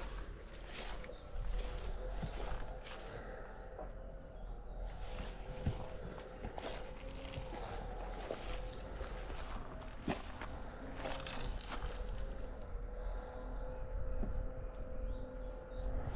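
Footsteps walking through long, dry, overgrown grass and weeds: uneven steps with a few sharper clicks, over a faint steady hum.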